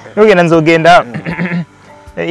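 A man's voice, talking or laughing, loud for about the first second, then trailing off, with a short pause near the end.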